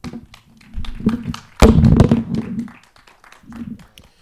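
Handheld microphone being handled and set down: a run of knocks and thumps through the PA, loudest around two seconds in.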